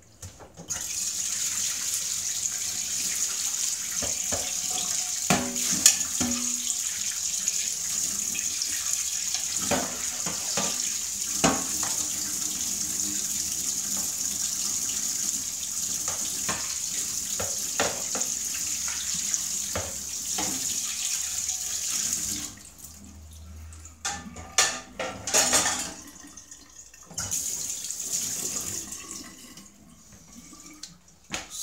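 Kitchen tap running into a stainless steel sink while dishes are rinsed under it, with a few sharp clinks of crockery. The tap shuts off about two-thirds of the way through, there is some knocking and clatter of dishes, and then the water runs again briefly near the end.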